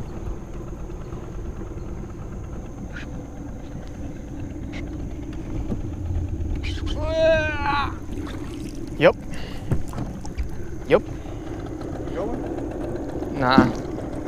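Small fishing boat's motor running steadily at low speed, a constant low hum, with a brief high voice call about halfway through.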